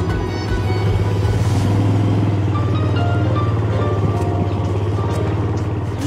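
Background music over a small motorbike engine running, as a Yamaha Finn underbone scooter is throttled up and ridden away.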